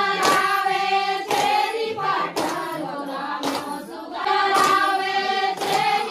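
A group of women singing a Chhattisgarhi Sua folk song together, with hand claps about once a second keeping the beat.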